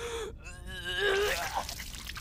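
A person's wordless distressed vocalizing: gasping, whimpering cries that rise and fall in pitch.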